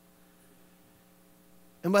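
A faint, steady electrical hum made of a few even tones fills a pause in speech, and a man's voice comes back in near the end.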